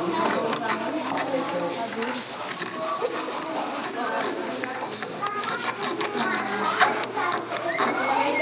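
Several voices talking over one another, children among them, with a few sharp clicks.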